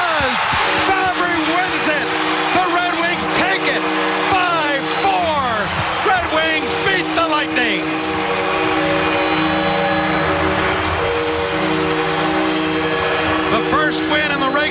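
Home arena crowd cheering loudly for a winning goal, with a long steady horn chord, the arena's goal horn, sounding over it from about half a second in.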